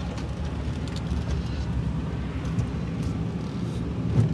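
A car driving along a paved lane, heard from inside the cabin: a steady low rumble of engine and tyres.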